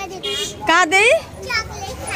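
Speech: children talking and calling out in high-pitched voices.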